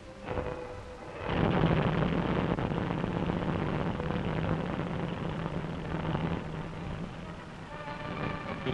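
The twin Packard V-12 aircraft engines of the racing speedboat Miss America IX running under power, heard as a rough, steady roar with a low hum on an old newsreel soundtrack. The roar comes in loud about a second in and eases off near the end.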